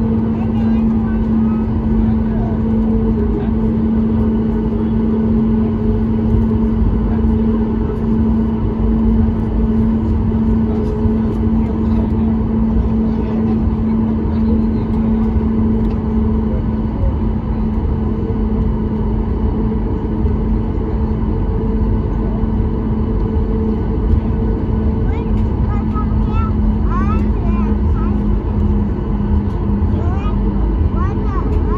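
Cabin noise inside a Boeing 737 MAX 8 taxiing, its CFM LEAP-1B engines at idle: a steady low drone with a constant hum.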